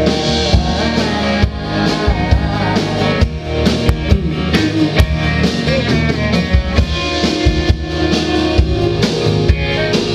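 Live rock band playing, with electric and acoustic guitars over a drum kit keeping a steady beat.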